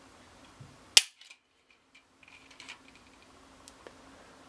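Unloaded Ruger 22/45 Lite pistol dry-firing as a trigger pull gauge draws its factory trigger back: one sharp click of the trigger breaking and the hammer falling about a second in, at a pull of about four and a half pounds. A few faint clicks and handling noises follow.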